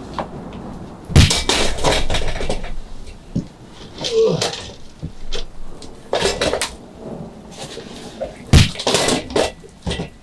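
A string of sudden thuds and crashes, like things being struck and broken. The loudest hits come about a second in and again near the end, with smaller knocks between.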